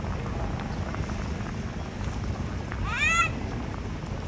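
A single short high-pitched call about three seconds in, rising then falling in pitch, over a steady low background rumble.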